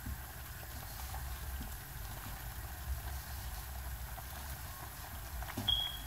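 Hands kneading soft bread dough in a metal pot: faint, irregular soft squishing and handling sounds over a low steady rumble, with a brief high-pitched tone near the end.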